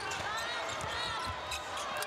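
A basketball bouncing on a wooden court floor as a player dribbles up the court, with faint voices in the arena.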